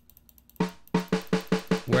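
Cakewalk SI Drum Kit's sampled regular snare drum, played as a quick run of hits about five a second, starting about half a second in.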